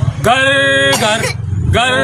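Performers' voices imitating a running machine: long, steady held tones, twice, over a fast, regular low chugging.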